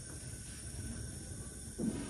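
Steady low rushing hiss of a propane Bunsen burner flame, with a brief louder sound near the end.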